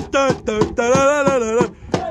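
Football supporters singing a terrace chant close by, several voices in unison holding sung notes, with a hand drum beating along.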